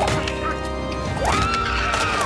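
A person's yell that rises in pitch and is held for under a second, over dramatic background music.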